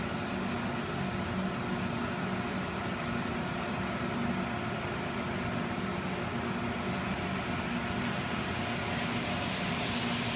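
Steady mechanical hum: a constant drone that does not change, with a few faint held tones in it.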